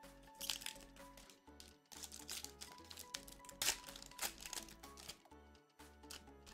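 Foil booster pack wrapper crinkling in the hands, in three spells of crinkling, over quiet background music.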